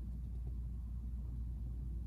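Room tone: a steady low hum with nothing else distinct.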